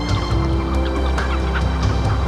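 A colony of great cormorants calling, many short overlapping calls at once, over low sustained background music.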